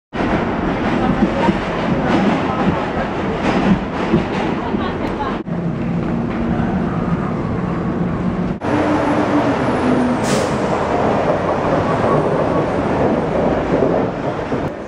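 New York City subway train running, heard first from inside the car and then from the station platform, a loud steady noise broken by two sudden cuts a few seconds apart.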